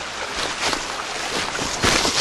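Footsteps and rustling through dry leaf litter and branches, a few sharper crunches near the end, over the steady rush of a small woodland stream.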